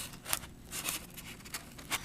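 A test lead's plug being pushed into an input jack of an Amprobe 37XR-A digital multimeter: several faint clicks and scrapes of plastic and metal as it is fitted.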